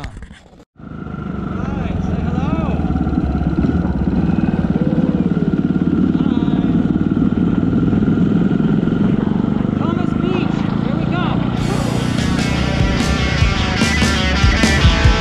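Small motorcycle being ridden, its engine running steadily under a loud rumble of wind on the handlebar camera's microphone, starting about a second in after a brief cut. Rock music comes in near the end.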